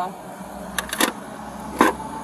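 Short clicks and knocks of objects being handled inside a car: three in quick succession about a second in and a louder one near the end, over a faint low hum.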